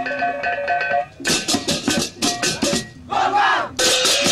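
Balinese gamelan beleganjur playing. For about a second, small pitched gongs repeat two tones. The music breaks off, then comes back with rapid crashing strokes of ceng-ceng cymbals and drums. A short shout comes near the three-second mark, and another crash lands at the end.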